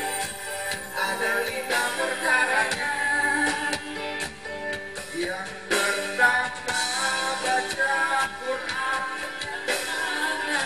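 A live band playing on stage with singing, through a PA: a pitched melody and vocals over a steady beat with frequent drum hits.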